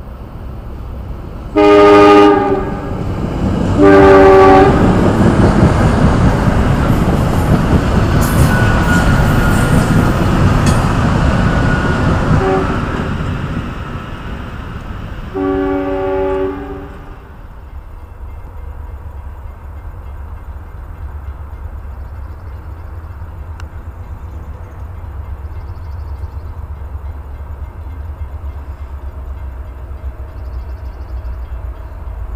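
SEPTA electric commuter train sounding its multi-note horn, a long blast then a short one, then passing close by, loud for about ten seconds before fading away. A third, quieter horn blast comes about fifteen seconds in, followed by a low steady rumble.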